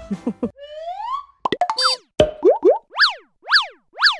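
Cartoon-style logo outro jingle: after a brief laugh, a smooth rising slide-whistle glide, a quick run of pops and blips, then springy up-and-down boing chirps repeating about twice a second.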